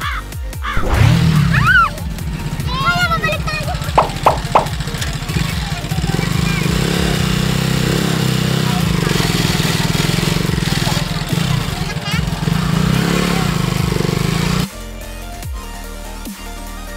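A small vehicle's engine running steadily as it drives along a rough dirt road, with girls' voices and laughter over it in the first few seconds. About fifteen seconds in, the engine sound cuts off and electronic dance music takes over.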